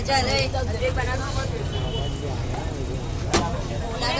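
Busy food-stall ambience: voices talking in the background over a steady low rumble, with one sharp knock near the end.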